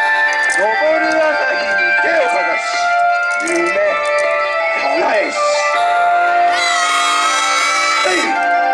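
Yosakoi dance music with a singing voice, loud and continuous, its texture thickening about six and a half seconds in.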